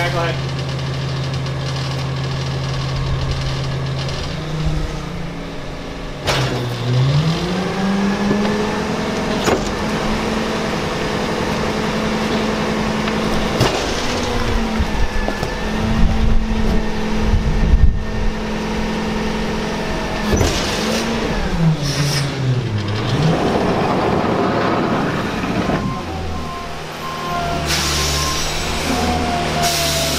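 Rear-loading McNeilus garbage truck idling, then its engine revving up about six seconds in to drive the packer hydraulics through a compaction cycle. It holds the higher speed for about sixteen seconds, then drops back down. Near the end a different vehicle engine is heard running.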